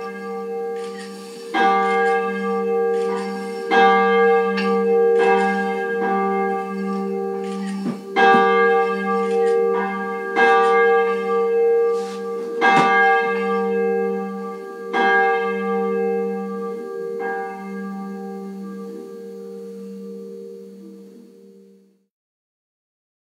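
A church bell tolling, struck every one to two seconds, each stroke ringing on over the hum of the one before; after the last stroke the ring slowly dies away and then cuts off.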